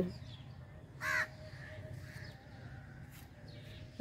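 A bird calls once, a short harsh call with a falling pitch about a second in, over a faint low background hum.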